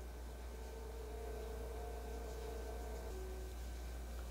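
Quiet room tone: a steady low hum with a faint even hiss, and faint thin steady tones that come in about half a second in and fade before the last second.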